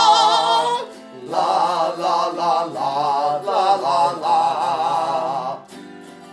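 A man singing a wordless "la la la" line with vibrato, layered with an overdubbed second take of his own voice, over a strummed autoharp. The singing stops shortly before the end, leaving the autoharp chords ringing.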